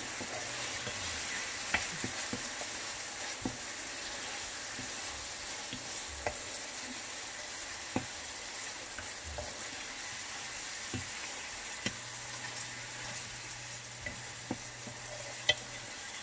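Beef strips and sliced onions frying in melting butter in a nonstick pan with a steady sizzle. A wooden spatula stirs them, now and then knocking against the pan with a sharp click.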